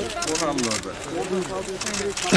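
Several people talking at once in the background, with a few short noise bursts in between.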